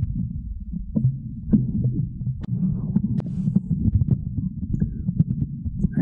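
Microphone handling noise as the mic on its stand is gripped and adjusted: a continuous low rumble with scattered knocks and clicks.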